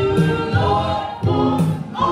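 A small gospel choir singing together, with a woman leading on a handheld microphone. Low notes sound beneath them about twice a second.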